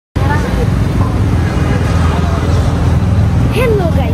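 Road traffic and car noise heard from inside a car, a steady heavy low rumble, with brief snatches of voice near the start and near the end.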